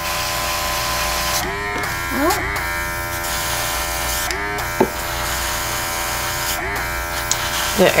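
A small airbrush compressor runs with a steady electric hum, alongside the hiss of air spraying white paint through the airbrush. The hiss stops briefly about four times as the trigger is let off.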